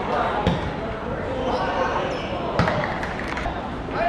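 A football being kicked on a pitch: two dull thuds about two seconds apart, over players' voices calling.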